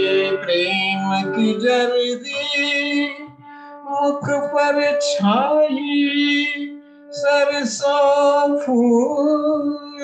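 A man singing a devotional song in long, bending phrases over a steady held accompanying note, with two short breaks between phrases, about three and a half and seven seconds in.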